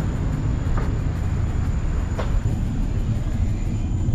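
Steady low mechanical rumble with a constant high-pitched whine over it.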